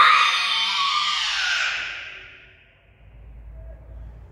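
A girl's loud shout announcing the kata, Kanku Dai, before she begins, ringing with a long echo in a large empty hall that dies away over about two seconds.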